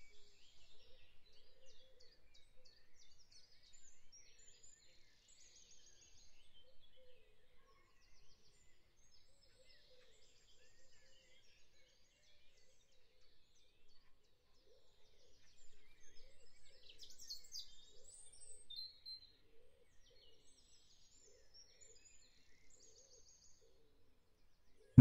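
Near silence, with faint birds chirping intermittently in the background.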